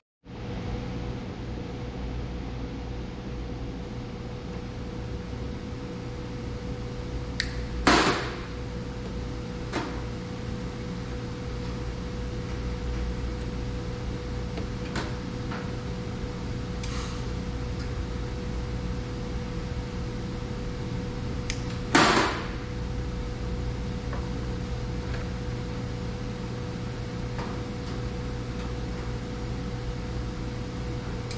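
Two short bursts of arc welding, tack welds on the cement mixer's sheet-metal cover, about 8 seconds and 22 seconds in, with a few faint clicks between. Under them runs a steady low hum with a constant faint tone.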